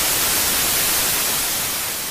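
Television static sound effect: a steady, loud hiss of white noise that starts to fade near the end.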